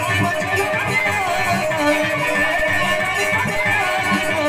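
Live band music: an electronic keyboard plays a wavering melody over steady drumming, with no singing.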